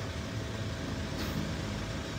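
Steady low hum of a 2009 Hyundai Starex van idling, with a faint steady whine, heard inside the cabin.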